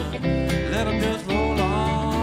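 Live country-folk band playing an instrumental passage: electric bass and acoustic and electric guitars, with a lead melody line that bends and slides in pitch.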